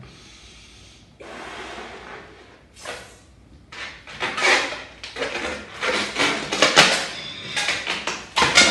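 A breath blown into a small makeshift balloon, lasting about a second, then a run of rubbing and rustling handling noises with a few sharp knocks as the balloon is worked.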